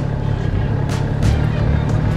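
Touring motorcycle engine running with a steady low hum as the bike rolls slowly.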